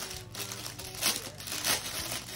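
Small plastic bags of diamond-painting drills crinkling as they are handled, a few short crinkles, over faint background music.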